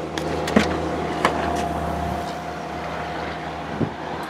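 The rear liftgate of a 2008 Pontiac Vibe being unlatched and raised: a few sharp clicks in the first second or so, a faint steady tone, then a knock near the end. A steady low hum runs underneath.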